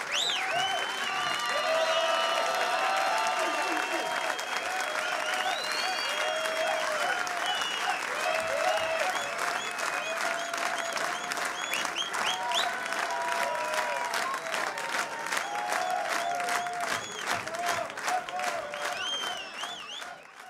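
Concert audience applauding, cheering and whistling. From about halfway through, the clapping falls into a steady rhythm.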